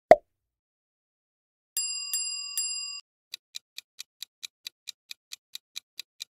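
Quiz sound effects: a short pop at the very start, three quick bell dings about two seconds in, then a clock-like countdown ticking at about four to five ticks a second for the answer timer.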